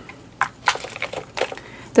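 Plastic nail-tip cases being handled: a few sharp clicks and crinkles as the plastic tip case and tips are moved.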